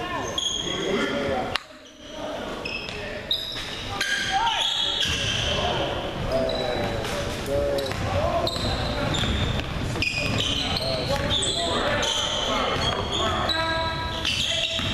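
Basketball being dribbled on a gym's hardwood court, with sneakers squeaking in many short high chirps and players' voices, all echoing in the large hall.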